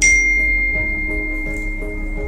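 A single bright bell-like chime struck once, its pure high tone ringing on steadily for about two seconds, over soft background music.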